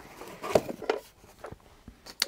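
Handling noise as a plastic plug-in time switch is lifted out of its cardboard box: a few short knocks and scrapes of plastic against cardboard, the loudest about half a second in.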